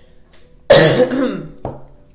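A woman coughing: one loud cough about two-thirds of a second in, then a shorter, softer one near the end.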